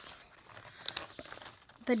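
Paper rustling as old greeting cards are slid and lifted against each other in a cardboard box, with a few small ticks of card edges about a second in.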